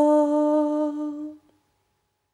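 A woman's voice humming one long, held note at the close of a mantra chant, fading out and stopping about one and a half seconds in.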